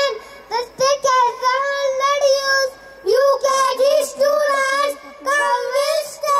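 Young boys singing into handheld microphones, in sung phrases of held, wavering notes broken by short breaths.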